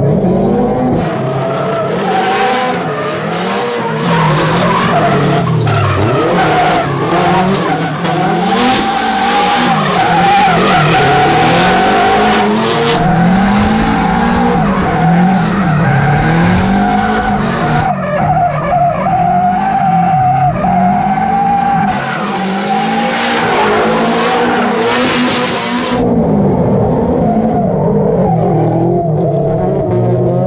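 Two Nissan S13 drift cars sliding in tandem. The engines rev up and fall back over and over as the throttle is worked through the drift, over a steady squeal and hiss of rear tires spinning and sliding on the asphalt.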